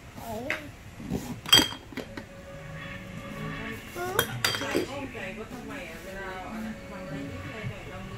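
Small glass drink bottles clinking against each other as they are taken out of and set back into a cardboard box: a string of sharp clinks, the loudest about one and a half seconds in.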